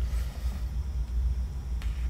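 Steady low hum of room noise in a pause between speech, with a short intake of breath near the end.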